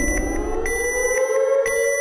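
Siren wail winding up, rising in pitch for about a second and a half and then holding, over high-pitched repeated beeping, with a low rumble that drops away just over a second in.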